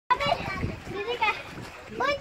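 Excited human voices: people talking and exclaiming, with the loudest burst right at the start and another about a second and a quarter in.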